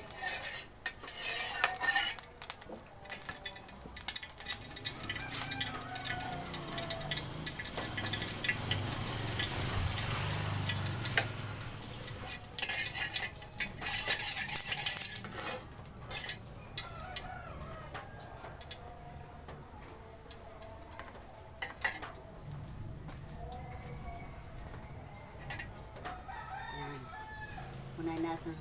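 Metal spatula clinking and scraping against a wok, in scattered bursts of sharp clicks, with other pitched calls in the background.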